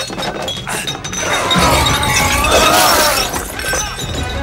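Glassware shattering and tinkling: a crash of breaking glass starting about a second in and lasting about two seconds.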